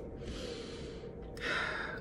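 A woman's breathing between phrases: a long breath lasting about a second, then a shorter, louder one near the end.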